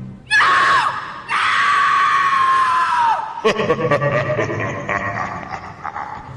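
A loud, high-pitched scream, a short cry and then a long one held about two seconds, falling away at the end. It closes the ghost-themed routine's soundtrack. Then clapping and cheering from the arena crowd, fading toward the end.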